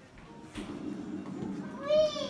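A low background murmur, then near the end a loud, high, drawn-out wailing call that rises slightly in pitch and is held.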